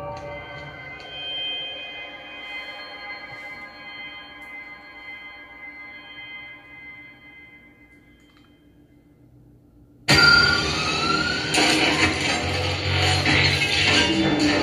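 Movie trailer soundtrack: a sustained musical chord rings and slowly fades low. About ten seconds in, a sudden loud burst of sound effects breaks in, with rising whines.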